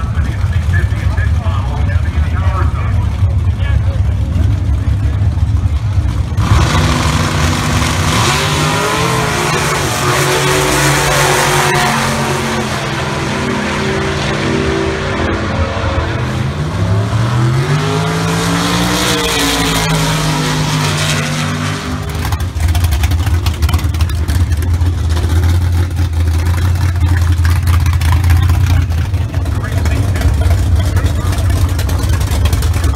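Drag-racing gasser engines revving hard from about six seconds in, rising and falling in pitch for some fifteen seconds as the cars make a pass down the strip. Before and after, a steady low rumble.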